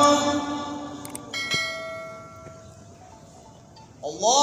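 A couple of sharp clicks, then a bell-like chime with several ringing tones that slowly fades: the sound effect of a subscribe-button animation. It is laid over the tail of a man's sung call to prayer, which dies away in the first half-second.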